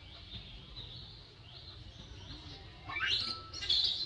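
Small birds chirping, a faint run of short rising high notes repeating every half second or so, with two louder calls about three seconds in that sweep sharply up in pitch.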